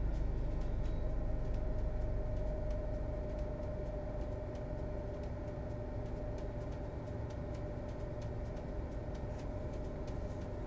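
A steady low hum with a faint held tone, and faint scattered ticks over it.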